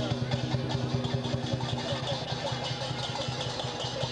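Rapid, closely packed beats on a large Chinese drum, a rolling accompaniment to the dragon dance, over a steady low hum.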